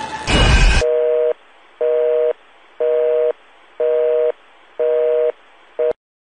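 A short burst of loud, distorted noise, then a telephone busy signal: a low two-note beep, half a second on and half a second off, sounding five times, with a sixth cut short near the end.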